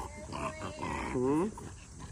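French bulldog vocalizing in protest while held for nail clipping: a short sound, then a longer call falling in pitch about a second in.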